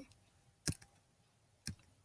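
Two short, sharp clicks about a second apart, from working the computer while trying to stop a screen recording.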